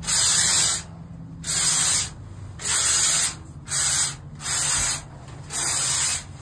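Spray foam insulation gun spraying in short hissing bursts, six in a row about a second apart, over a steady low hum.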